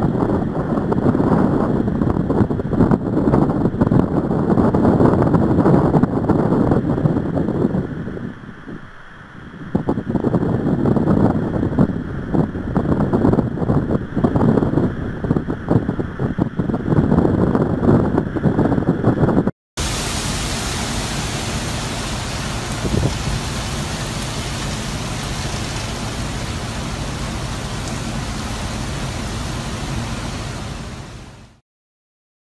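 Hurricane-force wind buffeting the phone microphone in uneven gusts, easing briefly about eight seconds in before rising again. After a cut, the wind gives way to a steady, even hiss.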